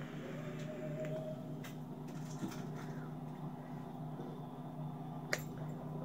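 Long draw on a box-mod vape with a rebuildable dripping atomizer: faint airflow hiss and light crackle from the coil, over a steady low hum, with one sharp click about five seconds in.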